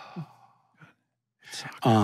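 A person's long breathy sigh trailing off, a short pause, then talking starts again near the end.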